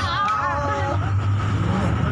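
Bus engine and road noise, a steady low drone heard from inside the passenger cabin, under passengers' voices.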